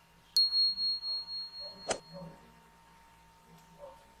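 Notification-bell ding from a subscribe-button overlay sound effect: a single high chime that rings out and fades with a pulsing level over about two seconds. A short knock comes about two seconds in.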